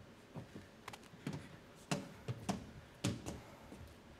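Scattered, fairly quiet knocks and thumps, about two a second, as people climb into a cardboard rocket prop; the strongest knocks come about two and three seconds in.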